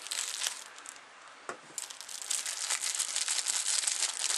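Packaging crinkling and rustling as it is worked open by hand, in a burst at the start and again steadily from about two seconds in, with a single click in the quieter stretch between.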